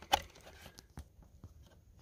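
Faint handling noise with a few light clicks, the clearest about a second in, as hands work at the plastic trail camera.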